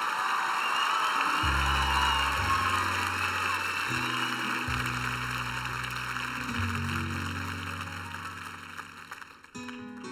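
Audience applauding and cheering. About a second and a half in, the band comes in under it with held low chords. The applause fades near the end.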